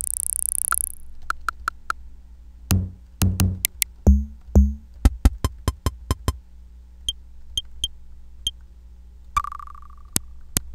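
Electronic drum-kit samples from a software drum instrument, triggered one at a time rather than as a beat. A hissy noise sweep stops about a second in, followed by sharp ticks and clicks, a cluster of low booming thuds in the middle, a few high pings, and a short beep tone near the end.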